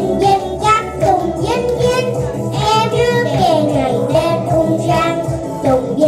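A young girl singing into a microphone, amplified over a sound system, with instrumental accompaniment.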